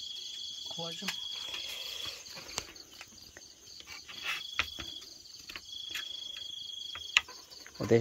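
Night insects calling: a steady high trill that breaks off about two seconds in and comes back twice, over a faint pulsing chorus of other insects. A few light clicks fall in between.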